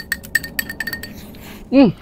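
Chopsticks clinking against a ceramic rice bowl while eating: a quick run of light clicks and clinks through the first second, some with a brief ring.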